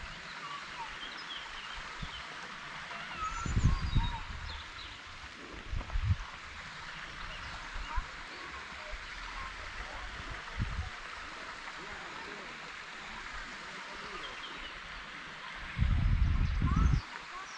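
Woodland ambience: many small birds chirping over a steady outdoor hiss, with a few low rumbles on the microphone, the loudest near the end.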